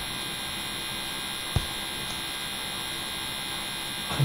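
Steady electrical hum and hiss from the recording chain, with a single short click about a second and a half in.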